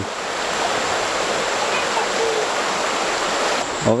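Mountain creek rushing over shallow rocky riffles: a steady, even rush of water.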